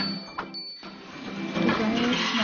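Sound effects of a subscribe-button animation over background music: two sharp clicks and a short, high bell-like ding in the first second. Fuller music comes in about a second and a half in.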